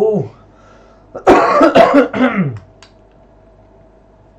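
A man clearing his throat with a rough cough, a loud burst of about a second and a half starting about a second in.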